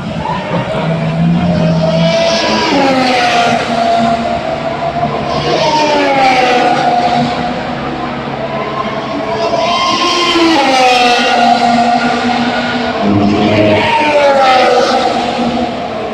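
Formula 1 car engines running loud and high, several cars going by one after another. About four times, a note falls in pitch as a car passes.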